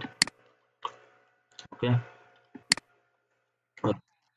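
Computer mouse clicks: a few sharp, separate clicks spaced about a second apart.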